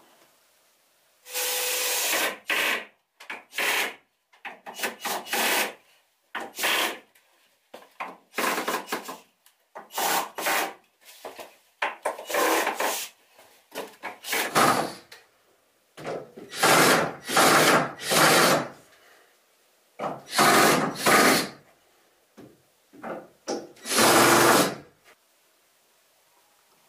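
Cordless drill run in a series of short bursts, a second or two each with brief pauses between, working into wood.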